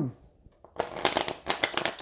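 A deck of tarot cards shuffled by hand: a quick run of crisp card flicks starting just under a second in.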